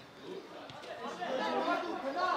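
Several men's voices calling out and chattering over open play, growing louder about a second in.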